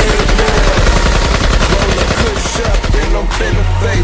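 Rapid automatic-rifle gunfire sound effect laid over a hip hop beat with deep bass: a dense, fast stream of shots that thins out near the end.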